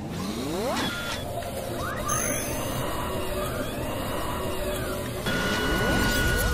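Sound effects for an animated logo sequence: a steady mechanical rumble under sweeping whooshes that rise and fall, with a fresh rising sweep about five seconds in.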